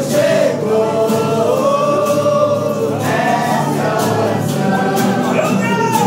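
A group of voices singing a hymn together, accompanied by several acoustic guitars strummed in a steady rhythm.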